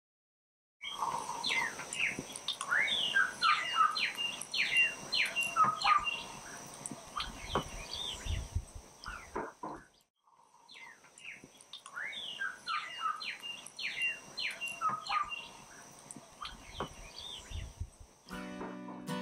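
Birds chirping and calling in many quick, short chirps over a faint steady high tone. The sound starts about a second in and drops out briefly about ten seconds in before the chirping resumes.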